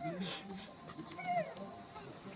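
Young macaque giving a short squeaky call that rises and falls in pitch, about a second in.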